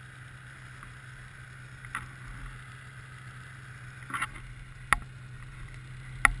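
Snowmobile engine idling with a steady low hum, and a few sharp clicks about two, four and five seconds in.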